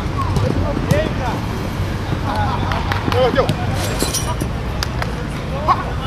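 Footballers shouting short calls to each other during play, with a few sharp knocks of the ball being kicked.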